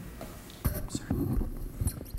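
A man's hesitant "uh" and breathy, muffled vocal sounds close to the microphone, with a couple of low thumps, one just over half a second in and one near the end.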